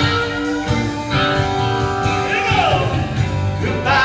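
Live rock band playing: electric guitar, bass and drums with held sustained notes over repeated drum hits, and a long falling slide in pitch about halfway through.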